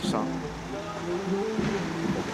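A motor vehicle's engine running, a steady hum.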